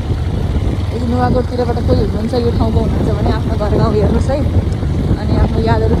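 Riding on a motorbike: wind buffeting the microphone over a low, steady engine and road rumble.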